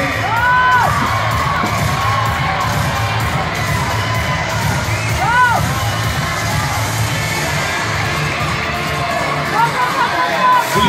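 A crowd of children shouting and cheering without a break, with two high rising-and-falling whoops standing out, about half a second in and again about five seconds in.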